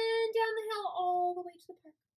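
A woman's voice stretching out one long vowel at a steady pitch, dropping lower about a second in and fading out by about a second and a half, followed by silence.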